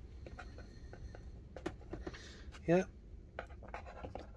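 Faint scratching and small scattered clicks of a paper-and-card model station roof being handled and eased into place on its building.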